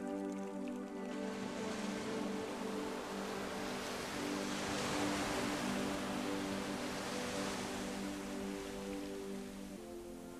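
Soft, sustained background music with the sound of sea surf: a wave washes in, swelling to its loudest about halfway through and ebbing away near the end.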